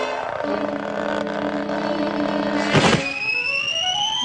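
Cartoon sound effects: a steady buzzing whir as the spinning beach umbrella bores into the sand, then a short burst of noise near three seconds and a rising whistle as the umbrella shoots up into the air.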